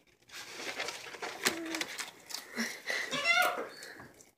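Bearded dragon biting and crunching a dubia roach: crackling and scraping with a sharp click about a second and a half in. Near the end a person's short wordless voice rises and falls.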